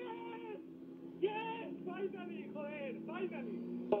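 Racing driver's team radio played through a TV speaker: a man's voice in several high-pitched, emotional shouts with no clear words, over a steady low drone.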